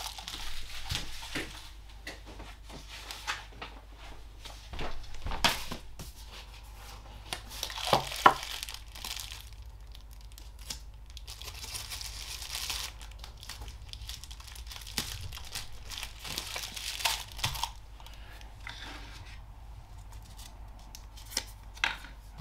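White tissue paper crinkling and rustling in irregular bursts as it is folded and pressed around a small pottery tumbler, with short tearing sounds and scattered light taps; a sharper knock comes about eight seconds in.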